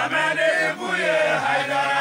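A group of men chanting a song together, several voices at once on long held notes, with the low voice stepping down about one and a half seconds in.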